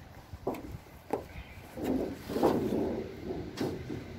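Loose scrap sheet-metal panels being picked up and handled on sand: a few sharp knocks, and a rough scraping lasting over a second in the middle.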